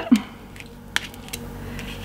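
Metal palette knife spreading and scraping paper-pulp (cellulose) paste over a plastic stencil on card: faint scraping with a few small clicks, the sharpest about a second in.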